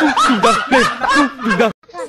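Rapid laughter: a run of 'ha' bursts, each falling in pitch, about four a second, that cuts off suddenly near the end.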